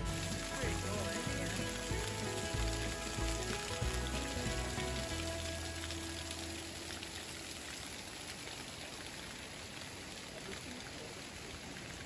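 Background music that fades out about halfway through, over a steady rush of falling water from a waterfall and stream that slowly grows quieter toward the end.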